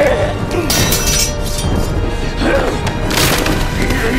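Film score music under fight sound effects: wood cracking and splintering as wooden shoji screens are smashed, with a crash about a second in and another just after three seconds.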